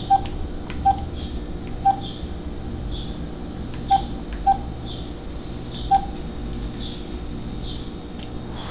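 Mobile phone keypad tones as keys are pressed: six short beeps of one pitch at uneven intervals, over a low steady background hum.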